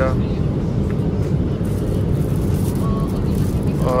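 Airliner cabin noise in flight: a steady low rumble.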